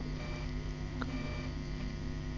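Steady low electrical hum with faint hiss: the recording's background room tone in a pause of the speech, with a faint click about a second in.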